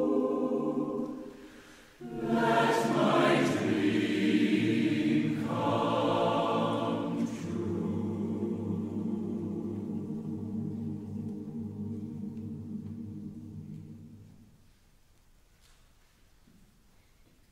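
Large mixed choir singing sustained chords: a held chord dies away over the first two seconds, a loud new entry follows with moving lines, and the final soft chord fades out about a second before the end.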